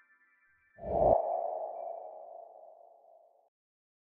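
An editing sound effect: a sudden low boom with a ringing ping-like tone that fades over about two and a half seconds and then cuts off abruptly.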